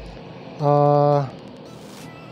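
A man's voice holding one steady, unchanging hummed note for under a second, about halfway through, over a low steady background noise.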